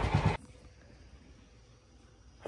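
Near silence: faint background with a thin steady hum. A man's speech over a low rumble is cut off abruptly about a third of a second in.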